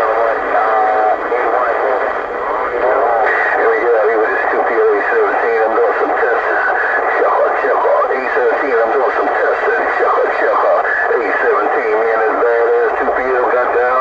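A man's voice coming in over a Cobra 148 GTL CB radio's speaker on channel 6 (27.025 MHz): a thin, narrow-band voice from a distant station talking without a break, too distorted to make out words.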